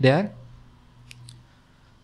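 A man's voice says one word, then a faint low hum with two faint short clicks a little after a second in.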